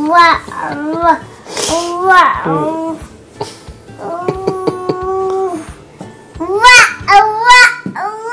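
A toddler babbling in a string of short, pitched, sing-song vocal sounds. About halfway through comes one long steady held note, and near the end louder rising-and-falling calls.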